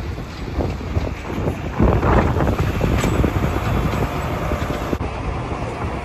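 Gusty wind buffeting the microphone, a loud uneven rumble that swells and eases.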